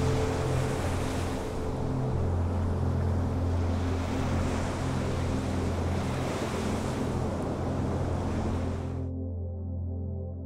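Ocean surf breaking on a rocky shore, a steady rushing wash, over soft ambient music with sustained low notes. The surf sound cuts off suddenly about nine seconds in, leaving only the music.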